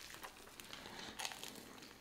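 Faint crunching and crinkling of a toasted club sandwich being bitten and chewed, with a few light clicks.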